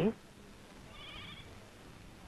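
A single faint, short, wavering animal call like a bleat about a second in, over quiet room tone.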